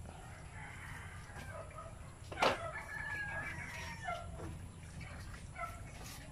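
A rooster crowing, one long call lasting about two seconds, that begins right after a sharp click about two and a half seconds in.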